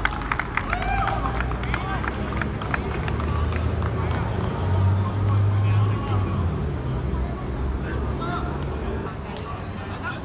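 Footballers' shouts and calls during a seven-a-side match, heard in the open over a steady low rumble of background noise that swells for a couple of seconds about halfway through.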